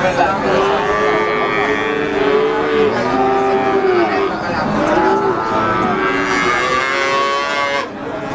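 Cattle mooing: a string of long, drawn-out calls, one after another with hardly a break.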